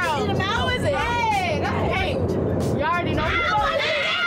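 Women's voices exclaiming and talking over one another in drawn-out, pitch-swooping calls, over the steady low hum of a jet aircraft cabin.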